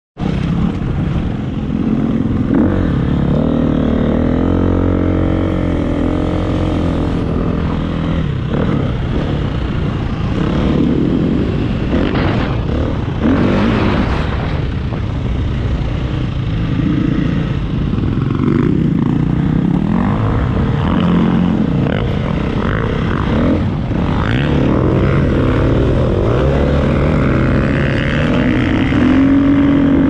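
Dirt bike engine heard close up from the bike being ridden, its pitch rising and falling again and again as the throttle is opened and closed while riding over sand.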